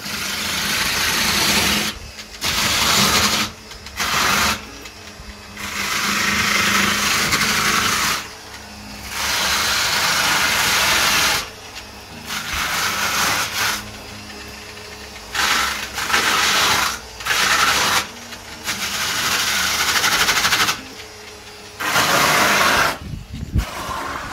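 Angle grinder fitted with a disc studded with screws, abrading sprayed foam insulation on a bus wall. It runs in repeated bursts of one to three seconds with short breaks between them.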